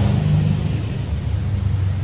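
A low, steady engine-like rumble, such as a motor vehicle running.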